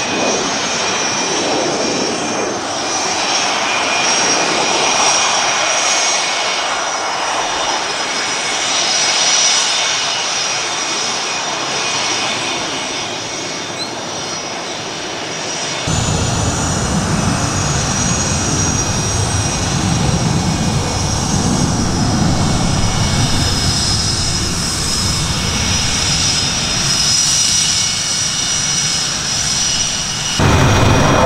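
Twin General Electric F404 turbofans of an F/A-18D Hornet taxiing: a steady jet whine with thin high-pitched tones over a rush of exhaust noise. About halfway through, the sound changes suddenly to a fuller, deeper rumble.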